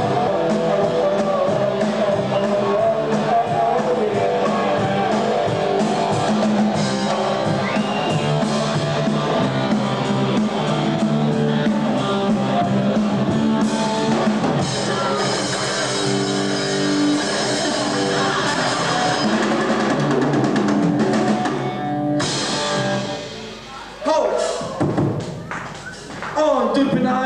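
Live rock trio of electric guitar, bass guitar and drum kit playing a song. About 22 seconds in the band thins out and the level drops, then a sudden loud burst comes back about two seconds later.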